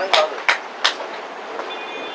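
A run of sharp, evenly spaced knocks, about three a second, that stops about a second in. A brief faint high tone follows near the end.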